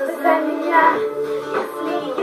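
Pop song playing, with a girl's voice singing the melody.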